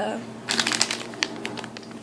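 A crinkly plastic candy packet being grabbed and handled: a quick run of crackles about half a second in, then a few single crackles.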